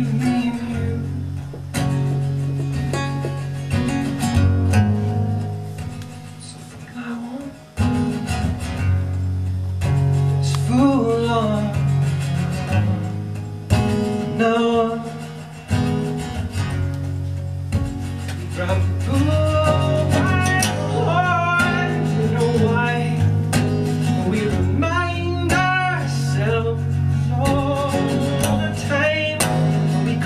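Acoustic guitar played in a live song, with sustained low notes under it and a wordless sung melody with vibrato coming and going over it. The music dips in level briefly around a quarter of the way in.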